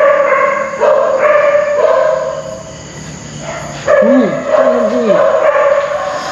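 A dog howling: a run of long, steady, loud howls, each about a second, with a short lull in the middle.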